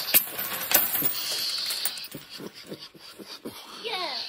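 A handful of mixed coins (quarters, dimes, nickels and pennies) dropped onto paper on a wooden table, clinking and clattering as they land and slide, then a few lighter taps as the last coins settle.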